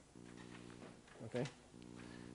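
Faint steady low hum at one unchanging pitch, broken off about a second in by a brief spoken "okay" and then resuming.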